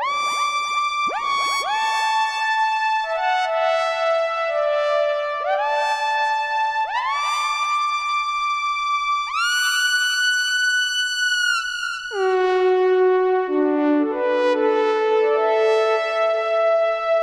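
Novation Summit synthesizer playing a brassy patch in sustained notes and chords, each new note sliding into its pitch. About twelve seconds in, the playing drops to lower chords.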